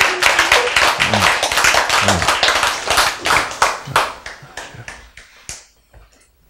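A small audience clapping, the claps irregular and thinning out until they die away about five seconds in.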